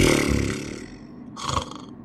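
A rough, growling, roar-like sound that starts suddenly, fades over about a second, and is followed by a shorter burst about one and a half seconds in.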